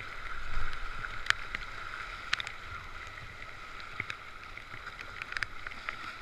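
Fast, flooded river current rushing around a kayak, running high at about 4000 cfs after a storm. Scattered sharp splashes and drips ride on top, with a dull bump about half a second in.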